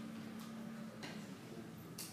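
A few faint, light ticks, about three in two seconds, over a faint low steady hum that stops about halfway through.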